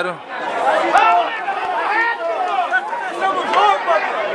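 Several voices chattering at once, with no clear words.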